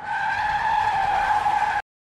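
Car tyre-screech sound effect: one steady squeal, falling slightly in pitch, that cuts off suddenly near the end.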